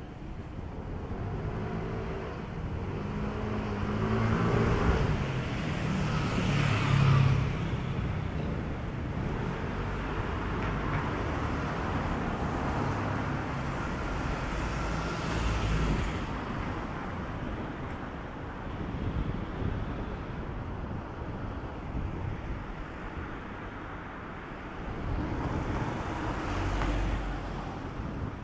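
City street traffic: cars passing by one after another over a steady background of road noise, the loudest pass about seven seconds in, with others in the middle and near the end.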